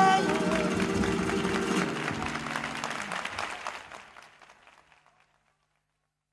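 End of a live flamenco recording: the singer's last short note and a ringing guitar chord give way to audience applause and shouts. Everything fades out to silence about five seconds in.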